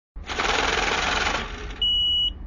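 Typing sound effect: a rapid mechanical clatter of keys as letters are typed out, then a steady high-pitched beep starting near the end.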